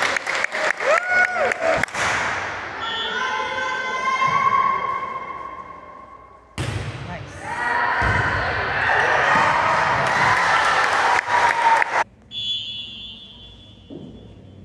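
Indoor volleyball game in a gym: the ball being struck and bouncing with sharp smacks, sneakers squeaking on the hardwood floor, and players and spectators calling out and cheering.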